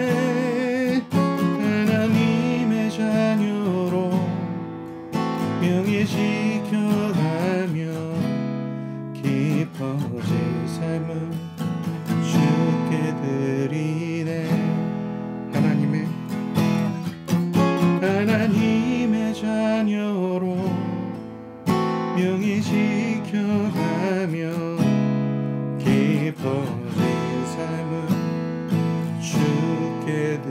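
Eastman E6D steel-string dreadnought acoustic guitar strummed in a slow chord accompaniment, with a man's voice singing along in long, wavering held notes.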